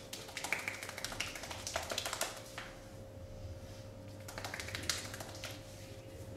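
Rapid tapping strikes of hands on a bare arm, percussive massage. They come in two bursts: the first about two and a half seconds long, the second about a second long, shortly before the end.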